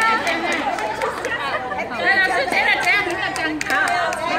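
A group of women's voices chattering at once, overlapping talk echoing in a large hall.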